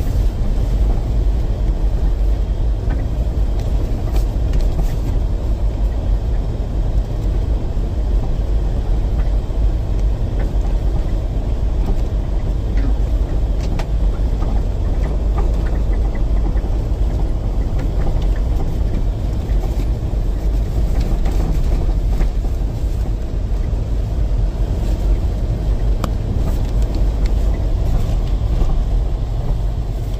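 Steady low rumble of a vehicle driving on a rough dirt and snow road, heard from inside the cabin: engine and tyre noise, with faint scattered ticks.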